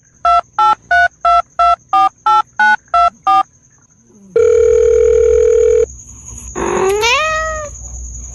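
Telephone keypad dialing tones: ten short two-tone beeps, about three a second, dubbed over each tap on a cat's nose. They are followed by one long steady phone tone of about a second and a half. Near the end comes a rising cat meow, as if the cat answers.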